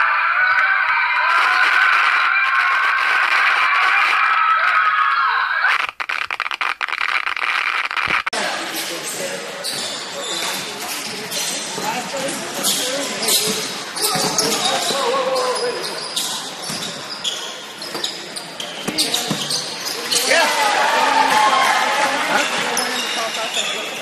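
Loud crowd noise in a gym for the first few seconds. After a cut, a basketball bounces on a gym floor in repeated sharp strikes, with players' voices echoing around a large hall.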